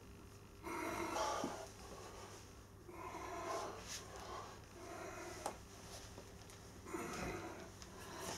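A man straining against a stiff 120 kg steel-spring power twister in an underhand grip, letting out four forceful, noisy breaths through nose and mouth. It is a failed attempt: the spring will not bend shut.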